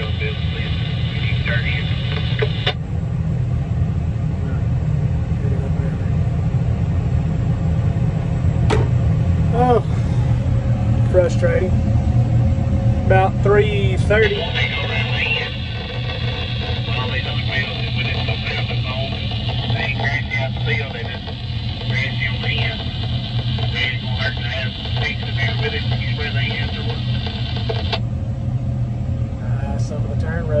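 Voices coming over a CB two-way radio in stretches, cutting in and out, over the steady low drone of a crop sprayer's engine heard from inside the cab.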